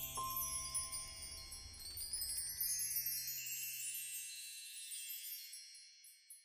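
Soundtrack music: a shimmering wash of high chime tones over a low held note. The low note fades out a little past the middle, and the chimes die away near the end.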